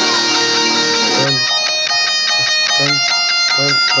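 Electric guitar tuned to drop B playing along with a trap backing track: a melodic line over steady low bass pulses. Rapped vocals come in at the very end.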